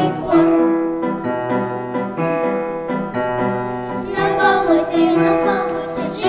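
Children's vocal ensemble singing to a piano accompaniment. The voices fall back to held notes and piano from about half a second in, and the singing comes back in about four seconds in.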